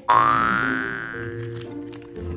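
A comic sound effect over light background music: a sudden ringing tone that slides upward and fades over about a second and a half.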